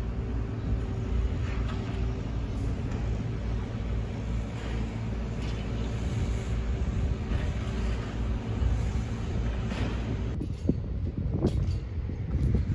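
A heavy engine running steadily, a low rumble with a faint steady hum over it. A few sharp knocks come near the end.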